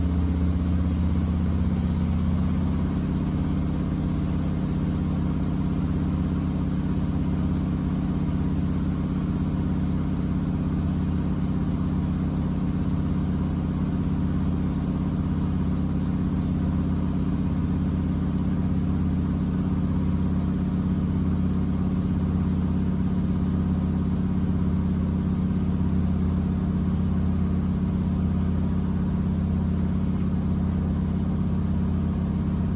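Miele W4449 front-loading washing machine running mid-wash with water in the drum: a loud, steady low hum.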